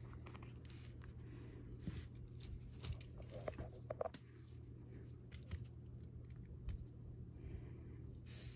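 Faint handling noise with a few soft clicks: a small plastic pot of edge paint being opened and a metal-tipped edge-paint pen being dipped into it.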